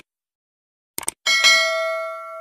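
Subscribe-button sound effect: two or three quick mouse clicks about a second in, then a bright bell ding that rings on and slowly fades.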